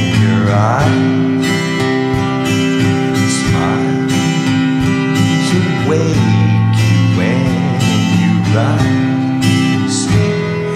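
Steel-string acoustic guitar strummed in sustained chords, with a man singing a slow melody over it.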